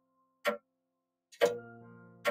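Clock-tick sound effect: a sharp tick about half a second in, then a second tick near the end that sets off a ringing musical chord which fades slowly.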